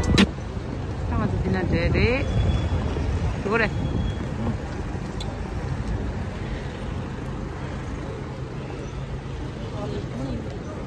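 City street sound: a steady low traffic rumble from passing cars, with brief voices of passers-by in the first few seconds.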